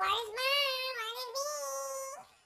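A high-pitched voice sings one long held note, its pitch wavering slightly, alone without a beat.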